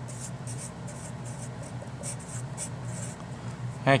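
Sharpie felt-tip marker writing on paper: a quick run of short, scratchy strokes as a word is written out.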